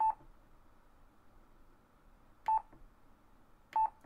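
Yaesu FT-817 transceiver giving three short, single-pitched beeps, each with a click, as its select knob is clicked round to step the frequency down toward 28 MHz: one right at the start, one midway and one near the end, over faint hiss.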